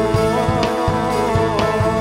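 Live church worship band playing a Cebuano praise song: drum kit keeping a steady beat, guitars, and a man and a woman singing into microphones.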